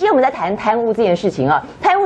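Speech only: a woman talking with a lot of rise and fall in pitch.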